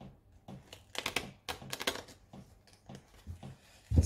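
A deck of tarot cards being shuffled by hand: runs of quick, crisp card flicks and clicks, densest about one to two seconds in.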